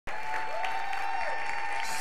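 Church congregation applauding steadily.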